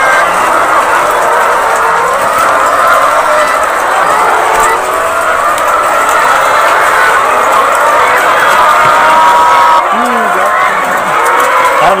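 A large flock of caged laying hens clucking and calling all at once, many overlapping voices.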